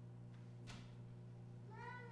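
A baby's short, high cry near the end, rising then falling in pitch, over a faint steady hum; a soft click about two-thirds of a second in.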